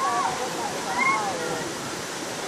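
A small waterfall rushing steadily over rocks into a shallow stream. High voices call out briefly at the start and again about a second in.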